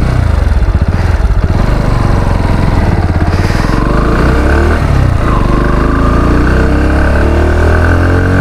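Bajaj Pulsar NS160's single-cylinder engine pulling away and accelerating, its pitch rising. The pitch dips for a gear change about five seconds in, then climbs again.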